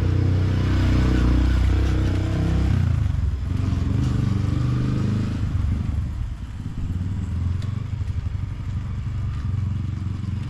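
Small motorcycle engine running close by with a steady low hum. About three seconds in the sound turns rougher and more uneven as the motorcycle moves off.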